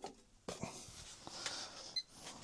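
Faint handling noise as a crocodile-clip test lead is fixed onto metal pipework for a continuity test. There is a click about half a second in, soft rustling, and a short sharp click near the end.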